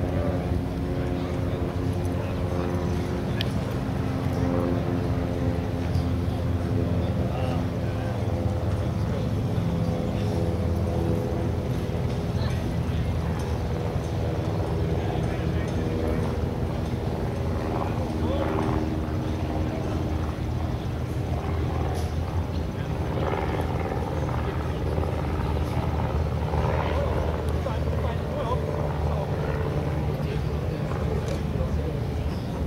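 Republic Seabee amphibian's pusher-propeller piston engine running steadily at taxi power on the water, growing fainter in the second half as the plane moves away.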